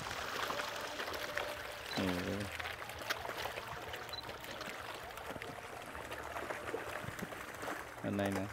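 Pond water splashing and churning as a dense crowd of walking catfish thrash at the surface. A brief voice sound about two seconds in.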